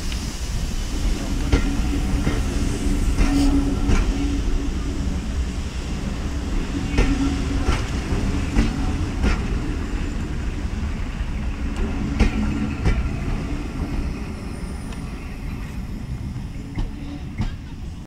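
Carriages of the steam-hauled Jacobite train rolling past on departure: a steady low rumble with wheels clicking over rail joints, mostly in pairs every few seconds. Steam hisses briefly at the start, and the sound eases off near the end as the last coach moves away.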